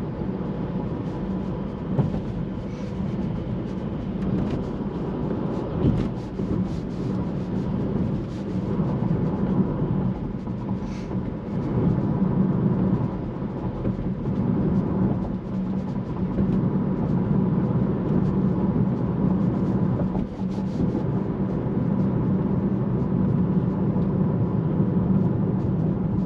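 Car cabin noise while driving: a steady low drone of engine and tyres on the road, with a few light knocks from bumps.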